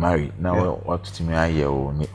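Only speech: a man talking, with a steady low hum underneath.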